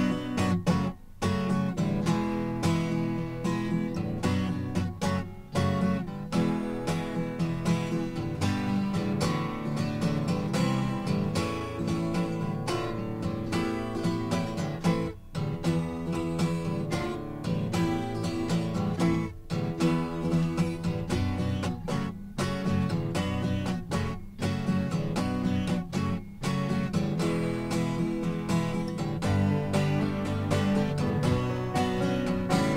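Acoustic guitar strumming chords in a steady rhythm, starting suddenly right after a studio take is slated; no voice comes in.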